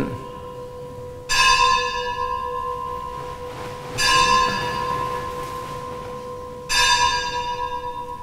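A bell struck three times at a steady pace, about every two and a half to three seconds, each stroke ringing out and slowly fading.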